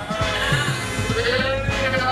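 A woman's drawn-out spoken answer over background music.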